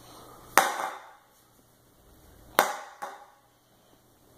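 Sharp whacks from a child's plastic toy bat being swung and striking something hard: two loud hits about two seconds apart, the second followed a moment later by a lighter knock.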